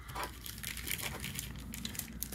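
Thin clear plastic penny sleeve for a trading card being handled, giving a soft run of small crinkles and crackles.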